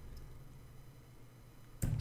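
Quiet room tone with a faint low hum; a voice starts near the end.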